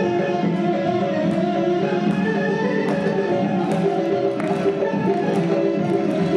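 Live folk ensemble of plucked strings playing an Armenian dance tune: a guitar and a smaller plucked folk instrument over a contrabass balalaika.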